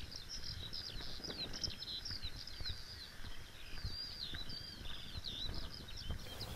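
A songbird singing a rapid, continuous run of high chirps and warbling notes, over a low background rumble.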